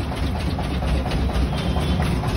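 Steady low mechanical rumble with faint, scattered light ticks.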